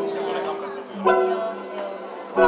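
Live band music: a held chord dies away and a new chord is struck about a second in, with voices talking in the background.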